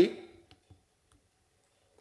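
A man's voice trails off at the start, then a couple of faint clicks and near silence.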